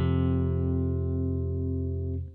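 F5 power chord on a Les Paul electric guitar, root at the first fret of the low E string, struck once and left ringing steadily.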